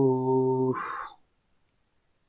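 A man's voice holding a long, level-pitched "so…" as a hesitation filler, ending about three quarters of a second in with a short breath.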